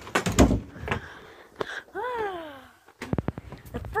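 A few sharp knocks and a low thump in the first half-second, then a drawn-out vocal sound falling in pitch about two seconds in, then scattered clicks.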